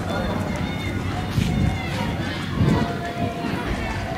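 Indistinct voices of people in the street, heard over steady outdoor noise.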